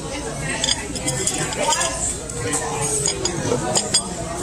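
Restaurant dining-room chatter: overlapping voices in the background, with a few light clinks of cutlery and dishes.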